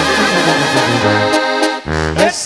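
Live banda sinaloense brass with norteño accordion playing an instrumental passage: held accordion and brass notes over a tuba bass line, breaking off briefly just before the end.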